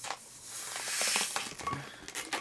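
A long latex twisting balloon being blown up by mouth: a breathy rush of air that builds and fades over about a second. A few light clicks near the end come from the small knot of latex rattling inside the balloon.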